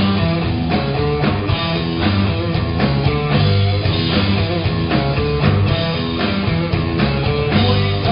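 Live rock band playing loud, with electric and acoustic guitars, bass and a drum kit keeping a steady beat.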